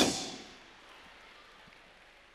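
The end of a man's word shouted into a microphone and sent through a PA, fading over about half a second in a large hall's reverberation, followed by a quiet hall.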